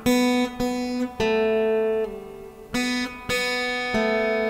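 Acoustic guitar fingerpicked one note at a time: about six separate plucked notes, each ringing on until the next, with one drop to a lower note about halfway through.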